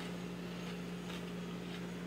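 Quiet room tone: a steady low hum with faint background hiss and no distinct event.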